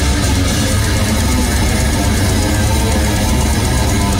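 Death metal band playing live, loud and dense: distorted electric guitars over a heavy, continuous drum and bass low end.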